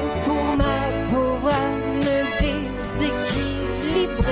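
Instrumental passage of an acoustic French chanson song, with accordion and plucked strings carrying a bending melody over sustained bass notes.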